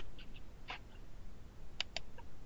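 A few soft computer mouse clicks, with a quick pair of sharp clicks near the end, as a passage of on-screen text is selected and highlighted.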